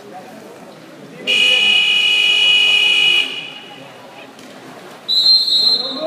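A loud, steady buzzer sounds for about two seconds, then about five seconds in a referee's whistle blows shrilly, over the low echoing noise of the pool hall during a water polo match.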